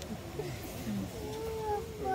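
A young child's drawn-out vocal whine, one long held note that falls slightly, starting a little past a second in, over a soft murmur of voices.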